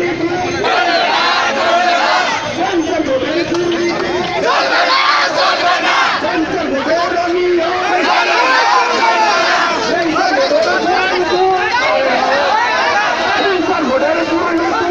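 A crowd of people shouting over one another, loud and continuous, as men push and jostle in a street scuffle.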